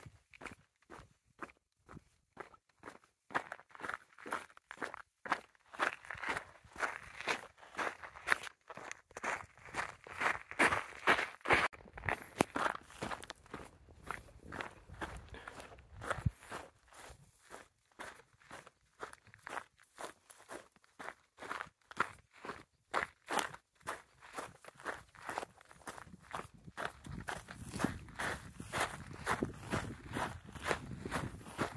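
Footsteps of a walker on a cobbled stone path, a steady pace of about two steps a second. A low rumble rises near the end.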